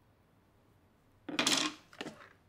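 A brief clatter of small hard objects being handled, starting about a second and a quarter in and lasting about half a second.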